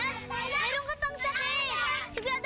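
A group of children's high-pitched voices calling and chattering over one another at play.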